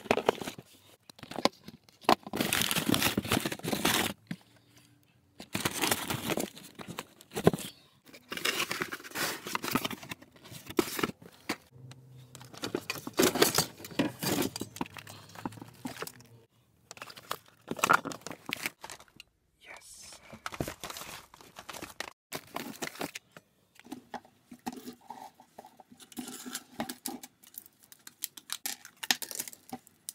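Hands rummaging through a pile of junk: paper, cardboard and plastic rustling and crinkling in irregular bursts, with clicks and knocks of objects being shifted. In the last few seconds the sound turns to lighter, sparser taps as small objects are moved about.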